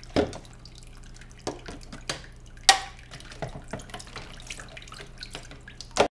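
Kitchen tap running into a plastic tub of water in a sink, with sharp knocks and clatters from a wooden spoon stirring in a ceramic mug. The loudest knock comes a little under three seconds in.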